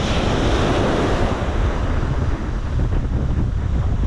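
Small waves breaking and washing up a sandy beach, with wind buffeting the microphone in a steady noise.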